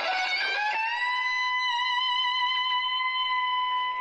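Distorted electric guitar holding one long sustained note that bends up slightly about half a second in and then rings on steadily: the overdriven end of a wild rock solo.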